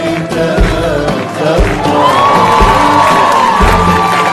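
Live Arabic orchestral music with violins and regular drum beats, with a long held note through the second half, as a studio audience claps and cheers along.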